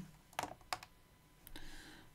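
Two light plastic clicks, about half a second apart, from the buttons of a RadioMaster TX16S radio transmitter as they are pressed to leave the telemetry screen, then a faint hiss near the end.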